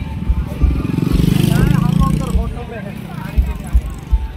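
A motorcycle passing close by, its engine swelling and fading over about two seconds, with people's voices around it.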